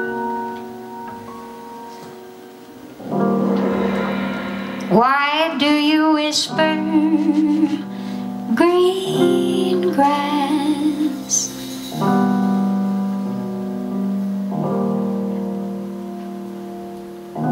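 Slow jazz ballad on grand piano, held chords ringing out, with a female voice singing a wavering phrase over it from about five to eleven seconds in.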